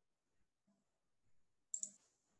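Near silence, broken near the end by two sharp clicks in quick succession.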